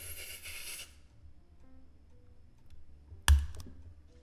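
A hissing noise for about the first second, then faint background game music with a few soft tones, then one sharp, loud knock about three seconds in.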